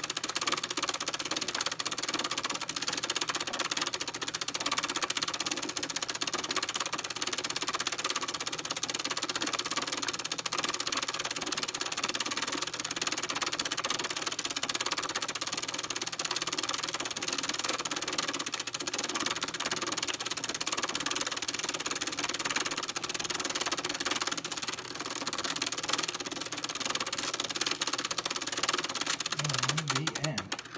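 1973 Kenner cassette movie projector running as its hand crank is turned, its film-advance mechanism making a rapid, steady mechanical chatter with a brief dip near the end.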